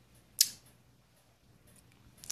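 A single short, sharp click with a brief hissy tail about half a second in, over faint room tone.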